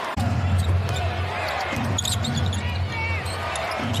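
Basketball arena crowd cheering a made three-pointer, a steady low rumble of crowd noise that swells suddenly at the start.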